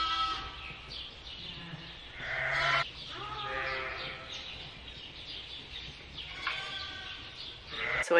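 Sheep bleating repeatedly in the barn, heard through an open doorway, with the loudest call a little over two seconds in.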